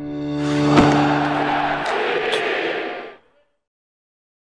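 Logo-animation sound effect: a steady low tone under a swelling whoosh that builds to a sharp hit about a second in, then a rushing tail with a couple of lighter high ticks that fades out after about three seconds.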